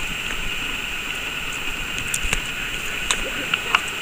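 Steady hiss of outdoor seashore ambience, broken by about five short sharp clicks in the second half.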